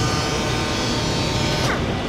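Steady whir of a robot-held SurfPrep 3x4 electric sander working the face of an MDF cabinet door, with its vacuum dust extraction running.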